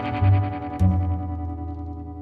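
Instrumental music with no singing: an effected guitar holds sustained chords over a low bass note, with a new chord struck about a second in.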